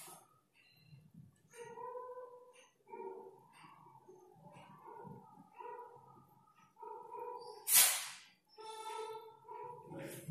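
Marker squeaking on a whiteboard as words are written, a string of short pitched squeaks with a brief louder rasp about eight seconds in.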